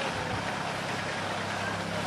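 A steady low hum of a distant engine under an even outdoor hiss, the hum growing a little stronger near the end.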